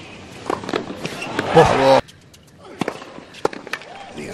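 Tennis ball strikes and bounces on a hard court, heard as sharp single knocks. A burst of voice in the middle cuts off abruptly at an edit, and a few more isolated knocks follow in quieter surroundings.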